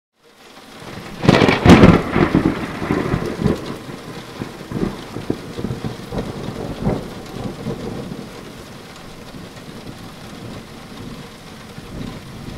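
A loud thunderclap about a second in, rumbling on and fading over the next several seconds, over steady rain.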